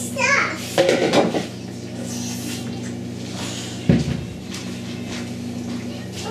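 Plastic kitchen containers and cupboard doors clattering and knocking as a toddler pulls things out of the lower kitchen cupboards onto a wooden floor, with one sharp knock about four seconds in. A short child's vocalization comes near the start, and a steady low hum runs underneath.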